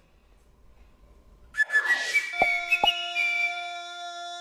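Closing jingle of an Old Spice deodorant TV advert: about a second and a half in, a whoosh, then a short whistled tune of a few rising notes over two struck chords, ending in a held chord.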